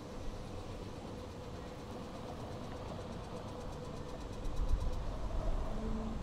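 City street traffic hum, steady, with a vehicle passing at low speed. Its low rumble swells to the loudest point about four to five seconds in.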